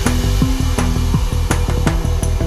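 Downtempo psybient electronic music with a steady kick-drum beat over a pulsing bass line and held synth tones.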